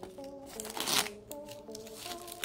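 Clear plastic shrink-wrap being peeled and pulled off a cardboard box, crinkling, loudest in one rustle about a second in. Background music plays throughout.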